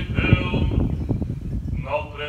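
Male clergy chanting an Eastern Orthodox memorial service (panikhida) in unison, on long held notes that break off near the end.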